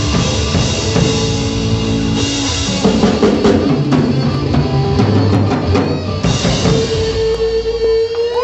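Live rock band of electric guitars, bass, keyboard and drum kit playing the closing bars of a song, with busy drumming and a long held note from about six and a half seconds in.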